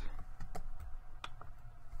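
A few short, sharp computer mouse clicks spread over two seconds, over a faint steady hum.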